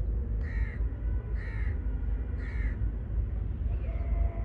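A crow cawing three times, about a second apart, each call short, over a steady low rumble.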